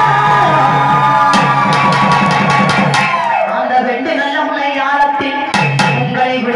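Amplified Tamil devotional folk song: a woman sings over a barrel drum's steady beat. A long held note slides down about halfway through, with a few sharp percussion strokes in the middle and near the end.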